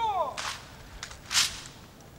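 A drawn-out shouted military drill command at the start, followed by two short, sharp noises about a second apart, the second one louder.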